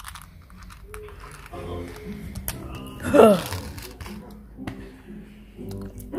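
A person's wordless vocal sounds, with a loud cry that slides up and back down about three seconds in, amid rustling and crinkling.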